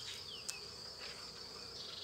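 Faint, steady insect sound of honeybees at an opened hive, with a high continuous chirr over it. There is one light click about half a second in.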